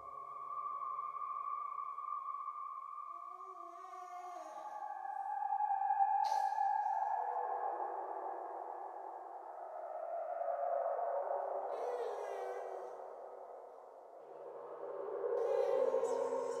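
Eerie synthesized drone score of sustained tones that swell and fade in three slow waves, the main tone sliding slowly downward, with a brief bright hit about six seconds in.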